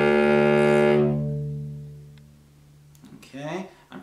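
A cello bows a sustained low D, rich in overtones, and the bow stops about a second in. The note then rings on and fades over the next second or so, the lower tones lasting longest as the open D string an octave above vibrates in sympathy. A man's voice starts near the end.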